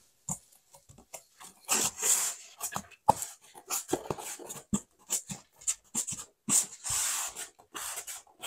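Styrofoam (EPS) board being pressed and shifted against the ceiling and the next board: scattered creaks, rubs and small clicks of foam on foam.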